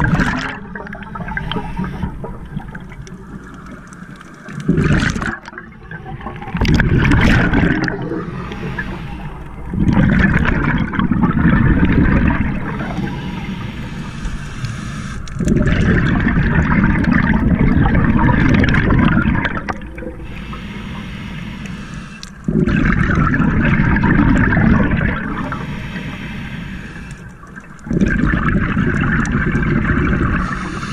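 Scuba regulator breathing underwater: a diver's exhaled bubbles gurgling out in bursts of one to four seconds, about six times, with quieter stretches between.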